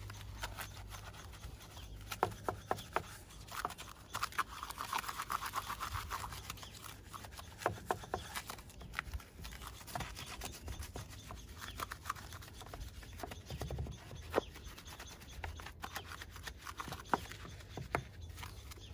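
Stiff-bristled hand brush scrubbing the soapy face and spokes of an alloy wheel, in quick irregular short strokes with a longer run of scrubbing about four seconds in.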